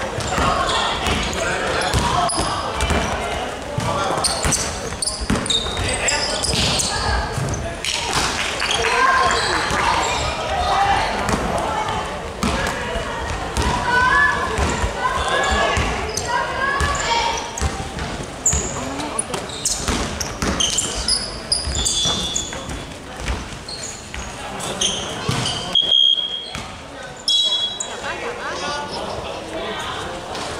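A basketball being dribbled and bouncing on a hardwood gym floor during a game, with repeated knocks. Players and onlookers call out, and the sound echoes around the large hall.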